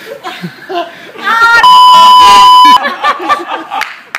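Laughter and a shout from a man just doused with ice water, then a loud, steady high bleep of about a second, a censor bleep laid over his words.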